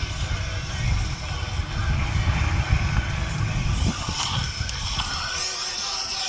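Wind buffeting and tyre rumble on a helmet-mounted camera as a mountain bike runs down a dirt trail, cut off about four seconds in by a few knocks as the rider falls and the bike comes to rest on the ground.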